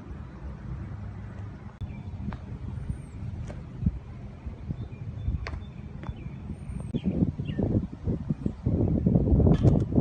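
Wind buffeting a phone's microphone outdoors: a low rumble that turns into heavier, uneven gusts over the last three seconds. A few short bird chirps and faint clicks sound above it.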